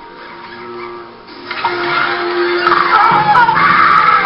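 Film soundtrack audio: music with voices over it, growing louder about a second and a half in.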